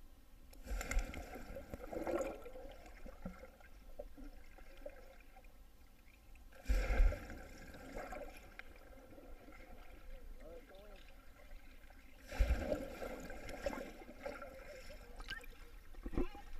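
People jumping into a swimming pool one after another, heard from a camera underwater: three muffled plunges about six seconds apart, each a sudden deep thud followed by a couple of seconds of bubbling, churning water.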